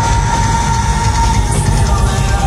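Live rock band playing loud heavy music, with one long held high note over a pounding low end of bass and drums.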